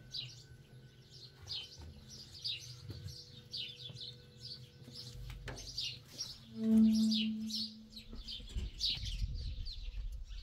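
Small birds chirping over and over in short, high, downward-sliding chirps, about one a second. About seven seconds in, a louder low steady tone sounds for about a second, followed by a low rumble.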